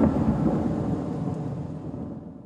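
Tail of a TV documentary's title-sequence music: a deep rumble under the title card, dying away steadily.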